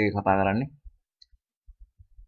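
A voice speaking for under a second, then a pause broken only by a few faint, short low clicks.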